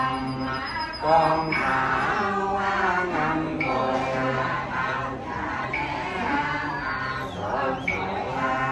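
Men's voices chanting a Vietnamese funeral prayer in unison, drawn out in long held notes.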